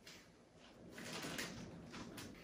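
Faint rustling and crinkling of parchment paper being lifted and handled on a metal baking sheet, starting about half a second in.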